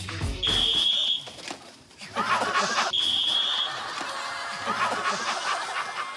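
Two blasts of a whistle, one about half a second in and one about three seconds in, each a steady shrill tone under a second long: the stop signal in a musical-chairs game. The dance music cuts off right after the first blast, and laughter follows.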